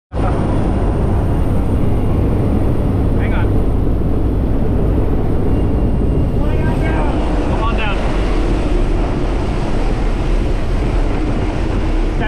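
Inside a skydiving jump plane's cabin in flight, the engine and propeller drone loudly and steadily, mixed with wind rushing through the open jump door.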